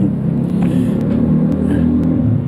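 A steady low rumble, like a machine or engine running in the background, with a few faint ticks.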